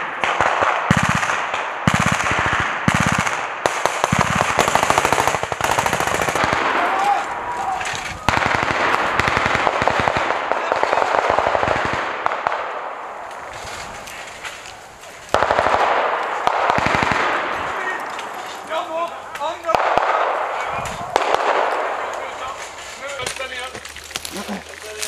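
Rapid automatic rifle fire. A few short bursts come first, then long stretches of near-continuous fire that ease off near the end, where shouted voices come through.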